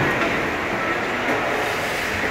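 Steady noise of an indoor ice rink during a youth hockey game: skates scraping and gliding on the ice over the hall's general hum.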